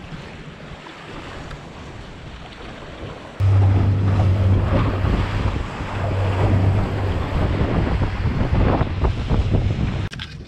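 Small waves washing on the shore with light wind. About three and a half seconds in it switches abruptly to a tinny running at speed: a steady outboard motor hum under loud wind on the microphone and water rushing past the hull.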